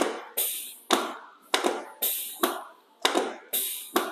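Chiropractic drop table: the lumbar section dropping under quick thrusts on the low back, a sharp clack each time, about seven in a row, each dying away quickly. This is a drop-table adjustment of the lower lumbar spine at L5.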